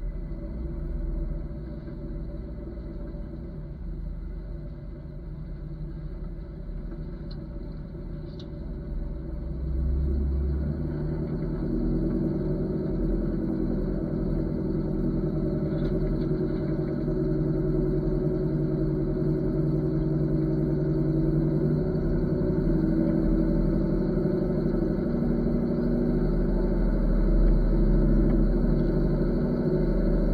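Pickup truck engine running under load while towing, with rumbling road noise. It grows louder about ten seconds in and keeps building as the truck picks up speed.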